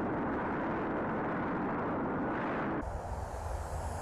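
Steady rushing wind noise, even and without a clear tone, with an abrupt change in its character a little under three seconds in.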